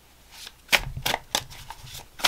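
A deck of tarot cards being shuffled by hand: soft rustling at first, then a quick run of sharp card snaps and clacks starting a little under a second in.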